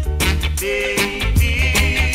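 Roots reggae record from 1975 playing: a deep, pulsing bass line under a held, wavering melody note.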